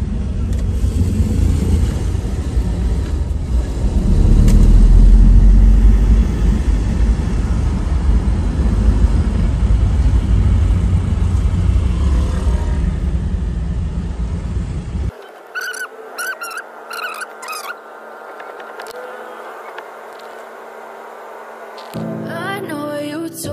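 Low rumble of a vehicle driving through city traffic, loudest around four to six seconds in. About fifteen seconds in, the rumble drops away abruptly, leaving quieter street noise with a few short, higher-pitched sounds.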